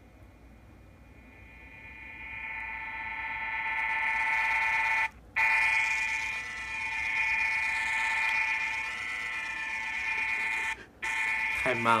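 A recorded 'bass beat' tone played through the small speaker of a handheld Sony voice recorder: a steady electronic tone with several overtones. It grows louder over the first few seconds as the recorder is brought closer to the listener's head, and cuts out briefly twice, about five seconds in and near eleven seconds.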